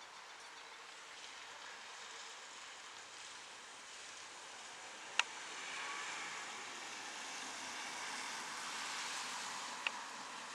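Quiet outdoor ambience: a steady hiss, a little louder in the second half, with one sharp click about halfway through and a smaller click near the end.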